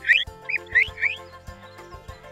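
A quick run of short, high, rising chirps, about five in the first second, over gentle background music.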